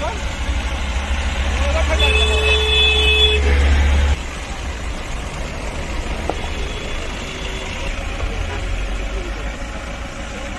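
Vehicles on a snowbound road, with a low rumble and voices in the background. About two seconds in, a steady held tone sounds for about a second and a half, and the loud rumble drops suddenly just after four seconds.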